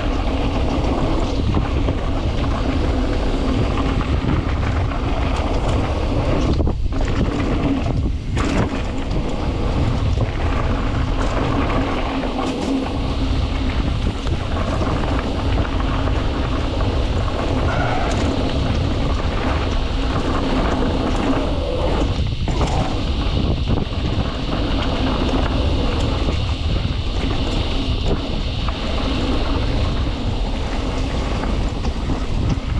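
Mountain bike riding fast down a dirt singletrack: tyres rolling over dirt and dry leaf litter and wind on the microphone make a steady rushing noise, briefly easing a few times.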